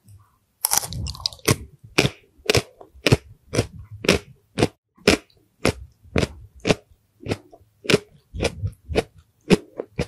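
A person chewing a bitten-off mouthful of a snack in a steady rhythm of about two chews a second, starting about a second in.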